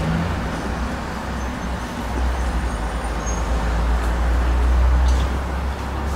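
Low rumble of road traffic, swelling as a vehicle passes about four to five seconds in.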